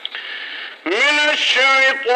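Faint, muffled talk, then about a second in a man's voice breaks in loudly, chanting a long held line that rises in pitch at its start and then wavers slightly.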